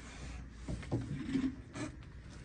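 Rubbing and scraping handling noises, with a few light knocks, as a boxed item in plastic packaging and papers are moved about on a desk.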